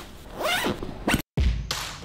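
Zipper on a nylon duffel bag pulled along in a couple of quick strokes. The sound cuts off suddenly just past halfway and is followed by a low thud.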